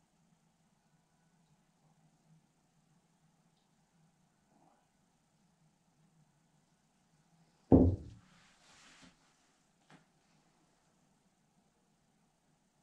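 A single loud thump about eight seconds in as a tilted acrylic pour canvas is set back down on the work table, followed by about a second of softer noise and a faint click shortly after.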